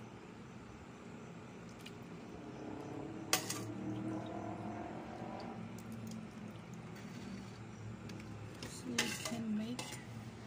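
Metal spoon clinking against a ceramic soup bowl: one sharp clink about a third of the way in and two more near the end, with faint voices in the background.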